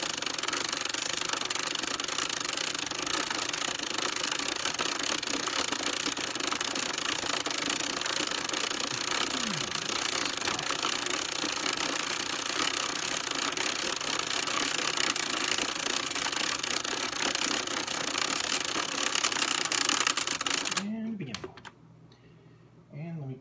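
Hand-cranked 1973 Kenner cassette movie projector being turned fast, its film mechanism giving a dense, rapid clatter. It is being cranked backwards to rewind the cartoon to its start. The clatter stops suddenly about 21 seconds in.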